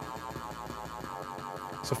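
A distorted, 808-like sampled bass looping in the Kontakt sampler, with a short loop repeating rapidly so that it holds steady in level, without drums.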